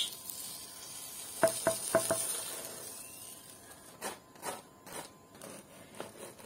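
Four quick metallic clinks with a short ring, from utensils against a frying pan, then a knife crunching through crisp toasted bread in a series of short crackly strokes.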